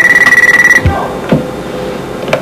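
Electronic desk telephone ringing: a steady, high, fast-pulsing electronic ring that stops a little under a second in, followed by two soft knocks.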